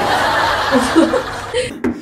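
Short, breathy snickering laughter in a few quick bursts.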